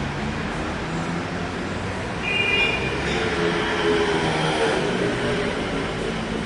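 Street traffic noise with a heavy vehicle, such as a bus, rumbling past, and a brief high squeal about two seconds in.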